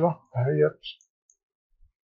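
A man speaking briefly in Arabic, then near silence for the last second.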